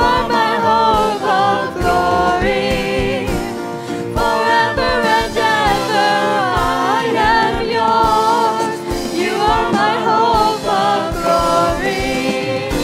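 Live contemporary worship band: several voices singing together in harmony over a drum kit and guitars, with a steady beat.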